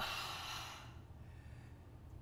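A woman breathing out audibly: a soft rush of air that fades away over about a second, a paced yoga exhale.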